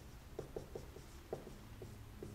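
Dry-erase marker writing numbers on a whiteboard: a handful of short, faint strokes as the figures are written out.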